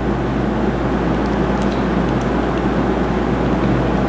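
Steady background noise: a constant low hum under an even hiss, with a few faint light ticks.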